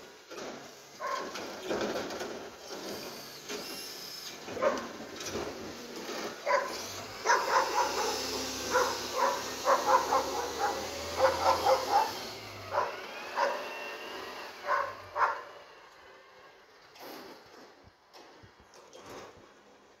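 Automated side-loader garbage truck working a cart: its engine revs under load to drive the hydraulics while a rapid run of sharp bangs and knocks from the arm and cart, loudest about seven to twelve seconds in, is followed by a brief arching whine, then it all fades.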